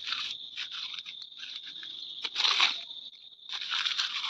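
Dry leaves crushed and crumbled between bare hands, crunching and crackling in irregular bursts, loudest a little past two seconds in. A steady high-pitched drone runs underneath.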